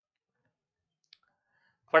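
Near silence with a single faint click about halfway through. A man's voice starts right at the end.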